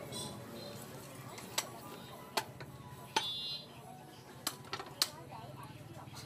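Butcher's cleaver chopping a goat leg on a wooden stump block: five sharp chops, irregularly spaced, the last two close together.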